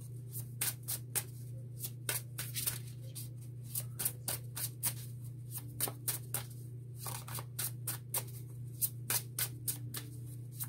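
A tarot deck being shuffled by hand: a run of quick, irregular card slaps and flicks, several a second, over a steady low hum.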